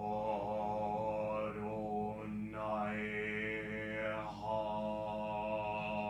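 A man's voice intoning a mantra-like chant, held on one steady pitch while the vowel sounds change, with a short break about four seconds in.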